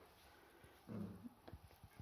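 A sleeping puppy gives one short, low whimper about a second in, the sign of a puppy dreaming; a few faint soft clicks follow.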